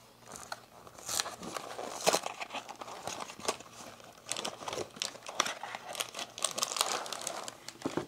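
A cardboard cookie box being opened by hand, its paper liner and a foil-wrapped cookie packet crinkling as they are pulled out: irregular crackling with sharp snaps, starting just after the beginning.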